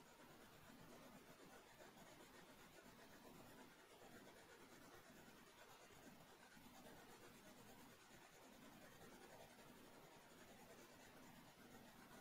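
Faint scratching of a graphite pencil on drawing paper, light shading strokes that carry on steadily.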